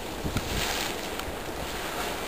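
Grotto Geyser erupting: a steady rushing of steam and water.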